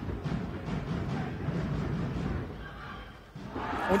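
Hall crowd noise with fans beating large drums in the stands.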